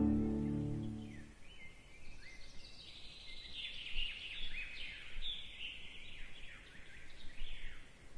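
Music fades out in the first second or so. Then songbirds are singing: a run of quick, high chirps and slurred notes.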